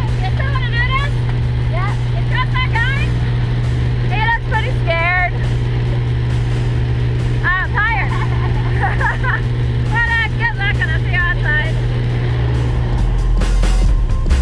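Steady drone of a small jump plane's piston engine and propeller heard inside the cabin, with people shouting and laughing over it in short bursts.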